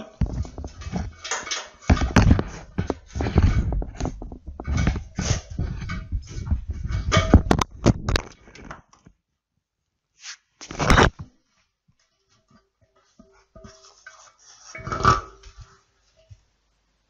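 Handling noise of an instant water-heater tap and its cable being worked into a ceramic basin by gloved hands: irregular knocking, scraping and rubbing for about nine seconds. Then two short bursts, about eleven and fifteen seconds in.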